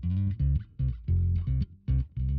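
Soloed bass guitar track playing back a run of short plucked notes with gaps between them. Its lowest notes sit close to 50 Hz and now and then dip to 40 Hz, the same range as the kick drum's fundamental.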